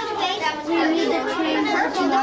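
Overlapping children's voices: classroom chatter, with no single clear speaker.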